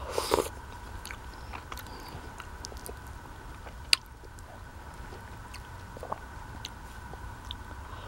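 Close-up mouth sounds of eating soft semolina porridge with cherries from a spoon: a short wet slurp as the spoon goes in at the start, then quiet chewing with small mouth clicks. A single sharp click about four seconds in, the spoon against the bowl.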